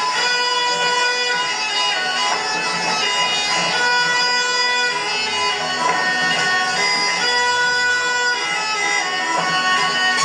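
Traditional Croatian folk dance music played on instruments, a steady tune of long held notes accompanying a kolo circle dance.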